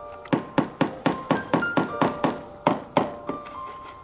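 Rubber mallet knocking on a carved panel set into a wall, about a dozen sharp blows at roughly four a second that stop about three seconds in, over background music.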